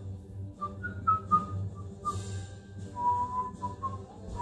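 A man whistling a tune along with a TV theme song that plays quietly underneath: a run of short notes, then a longer held note about three seconds in.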